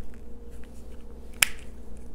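A single sharp plastic click about one and a half seconds in, from a small toy remote control as its infrared cover is pulled down, with faint handling ticks around it.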